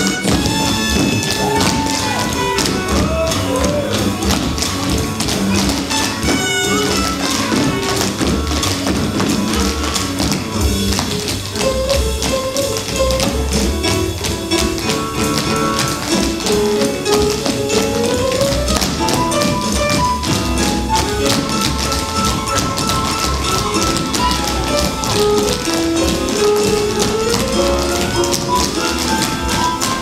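Many pairs of tap shoes striking a stage floor in quick, dense rhythms, over a recorded jazz-pop song playing an instrumental passage with no singing.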